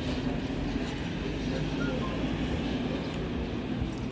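A steady low mechanical rumble, with faint voices behind it.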